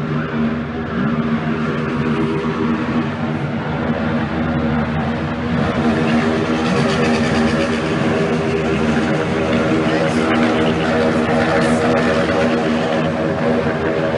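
Night street noise in a phone recording: vehicle engines held at high revs give a steady droning note over a general din, growing louder about six seconds in.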